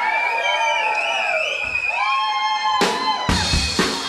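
Long, wavering whoops from the crowd, then about three seconds in a live drum kit kicks in with sharp, loud hits and deep bass-drum strokes, starting a funky drum break.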